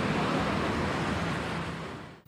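Steady rushing outdoor street ambience, fading out near the end.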